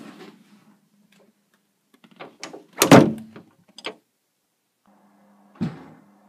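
A few scattered knocks and clicks, then a loud heavy thump with rattling knocks about three seconds in, and another single thump shortly before the end.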